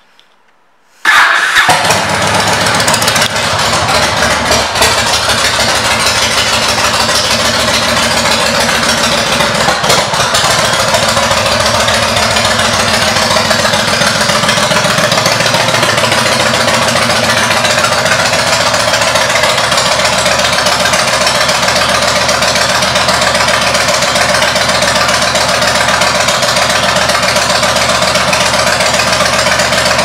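A 2002 Yamaha Road Star's air-cooled V-twin with aftermarket exhaust pipes starts about a second in and settles into a steady idle.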